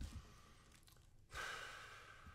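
A man's soft sigh: a breathy exhale starting about a second and a half in and fading away, after a faint low knock at the start.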